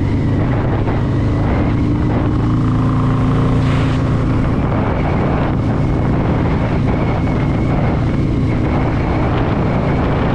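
Harley-Davidson Fat Boy V-twin engine built up to 117 cubic inches with a Screamin' Eagle Stage 4 kit, running steadily at cruising speed from the rider's seat, with wind noise on the microphone.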